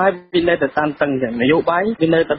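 Speech only: a news reader talking continuously in Khmer, the voice thin-sounding with no treble.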